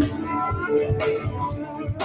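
Live band music between sung lines: electric guitar playing over a steady drum beat, just after a held vocal note ends.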